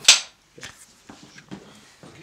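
Film clapperboard snapped shut once, a single sharp clap with a short room echo, marking the start of a take. A few faint knocks follow.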